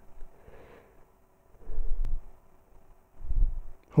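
A variac's knob being turned by hand to raise the current. It gives two low, dull bumps of handling noise, about a second and a half in and near the end, and a single sharp click around two seconds.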